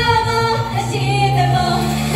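Idol pop song played live over a PA: female voices sing a held note, then the drum beat drops out for about a second and a half, leaving sustained chords, and comes back at the end.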